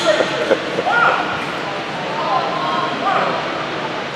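A short laugh close by, then faint voices chattering, echoing in a large gymnasium.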